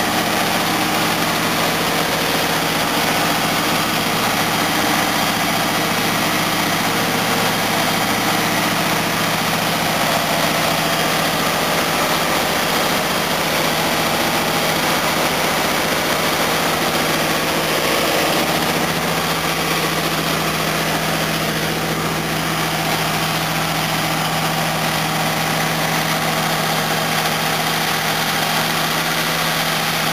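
Newly installed GM LS3 6.2-litre V8 idling steadily at a fast warm-up idle of about 1,600 RPM during its first run. The note rises slightly about eighteen seconds in.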